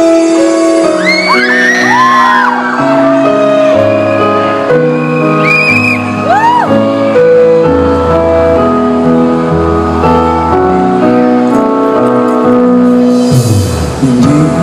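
Live band playing an instrumental passage of a pop ballad: held chords, with a low bass line coming in about halfway. High screams or whoops from the audience rise and fall twice in the first half.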